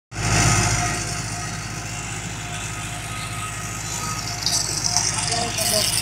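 Steady low, engine-like hum of running machinery, with a brighter hissing noise coming in about four and a half seconds in.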